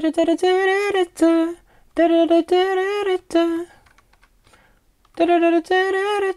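A man vocalising a wordless melody in a high voice, three short phrases of held notes close together in pitch, sketching out the chorus melody line. Computer-keyboard typing clicks fall between the phrases.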